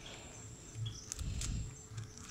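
Handling noise from gloved hands working a clear plastic bottle onto a branch: a few faint clicks and soft low thumps.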